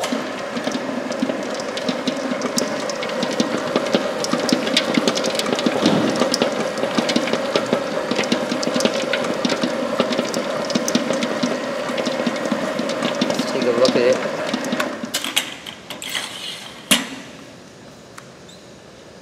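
Commercial planetary stand mixer running with a steady hum and a busy clatter of small clicks as its flat beater works a stiff chocolate bar dough; it winds down near the end, followed by a single sharp click.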